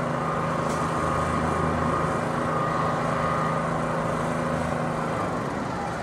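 A motor engine running steadily at constant speed, a hum of several even tones over a noisy bed; its lower tones drop away about five seconds in.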